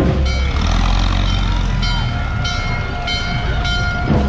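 Horn on a vintage fire truck sounding a chord of steady tones in several blasts, some short and some held, over parade music and crowd noise.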